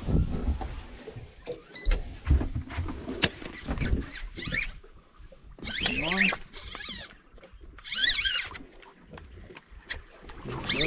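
Jacket fabric rubbing on the microphone and knocks from handling the rod during a fish fight, then four short, high, wavering wordless cries from the anglers in the second half.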